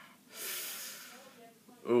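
A single breath by the person at the microphone, airy and without pitch, starting about a third of a second in and fading away over about a second; speech begins near the end.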